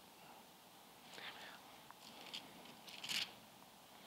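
Paper rustling faintly as notes are handled at a lectern: a few short, soft rustles about a second apart.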